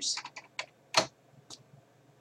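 Keystrokes on a keyboard typing in numbers: a few separate sharp clacks at uneven spacing, the loudest about a second in and a faint last one shortly after.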